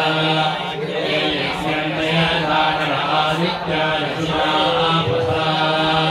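A group of Hindu priests chanting mantras together in a steady, unbroken recitation of several men's voices.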